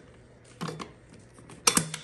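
Ratchet wrench clicking as a bolt is tightened down, in two short groups of clicks: about half a second in and again near the end.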